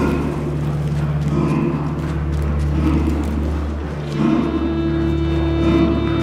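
Dramatic orchestral film score: a low sustained drone with a held string note swelling in about four seconds in, over light quick ticks of boots running on dirt.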